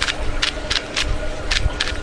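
A wooden Rubik's cube being turned in the hand, its wooden pieces clacking as the layers are twisted: a series of about six short, sharp clicks.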